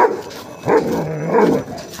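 Dogs barking during a fight between a German Shepherd and a Labrador: one bark right at the start, then a longer, louder run of barking from about two-thirds of a second in to about a second and a half.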